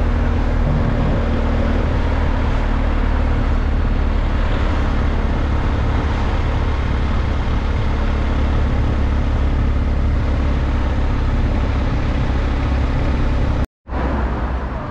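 On-board sound of a BMW GS Adventure boxer-twin motorcycle being ridden through town: the engine runs steadily under loud wind noise on the microphone. The sound cuts out abruptly near the end.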